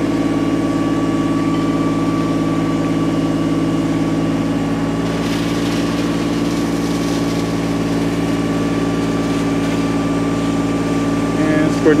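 Fire engine's engine running at a steady speed, driving the pump that feeds water pressure to the hose, with a steady whine above its hum.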